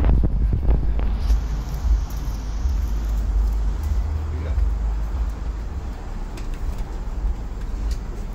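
Steady low rumble of road traffic, with a few sharp clicks in the first second and another near the end.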